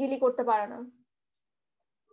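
A person's voice speaking in a lecture, breaking off about a second in, followed by near-total silence with one faint click.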